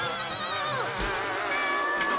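Cartoon soundtrack of held, wavering tones with a buzzy edge. A little under a second in, a whistle-like pitch slides downward, and a new held tone starts about a second and a half in.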